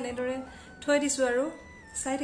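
A newborn baby crying: a wavering cry trails off, then one short, louder wail rises and falls about a second in.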